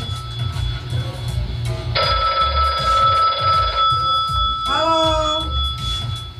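A telephone bell ringing in one long ring of nearly two seconds, starting about two seconds in, over background music.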